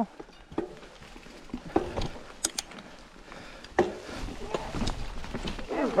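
Mountain bike rolling over a rocky, leaf-covered forest trail: tyre noise on dirt with scattered knocks and rattles of the bike, louder and rougher over the last couple of seconds.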